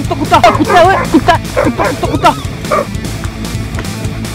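Fake dog barking in a quick run of short yapping barks, several a second, that die away about three seconds in. Background music plays underneath.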